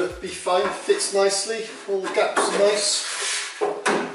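A man talking, with one short sharp knock near the end.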